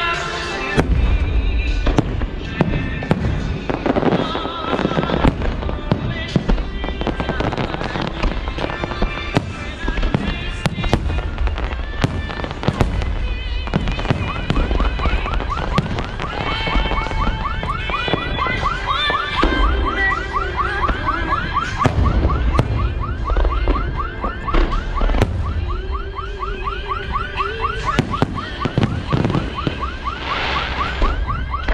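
Aerial fireworks display: shells launching and bursting in a continuous series of loud bangs, over music. From about halfway through, a fast-repeating warbling whistle runs alongside the bangs.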